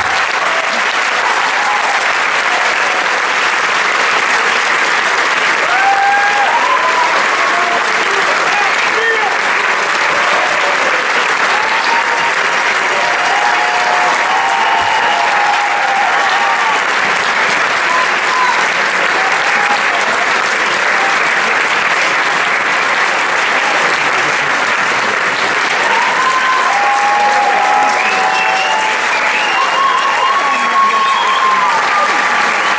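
Theatre audience applauding steadily, with scattered voices calling out over the clapping.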